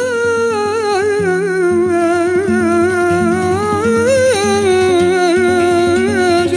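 An elderly man sings flamenco cante, a milonga, in a long wordless line held with vibrato, its pitch sinking slowly with small ornamented turns. A flamenco guitar plays short notes beneath the voice.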